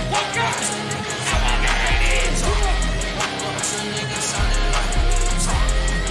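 Live trap music through a festival sound system, with deep 808 bass notes about a second long and short gaps between them.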